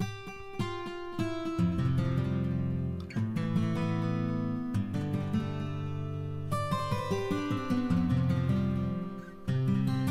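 A recorded guitar part played back through a delay plugin set to three quarters of a beat, each plucked note followed by echoes that make a slightly longer tail. Low notes are held beneath the phrase, which dips briefly twice.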